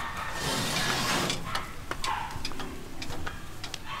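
A metal-framed greenhouse door scraping as it slides, a brief rushing scrape lasting about a second, followed by scattered light clicks and taps of footsteps and handling.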